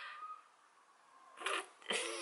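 Near silence in a pause between a woman's words, broken once by a short, soft intake of breath about one and a half seconds in. Her voice starts again right at the end.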